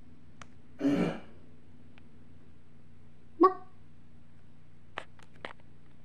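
A person making two short wordless vocal sounds, like grunts. The first is about a second in and falls in pitch; the second is shorter and sharper, just past the middle. A couple of faint clicks follow near the end, over a steady low hum.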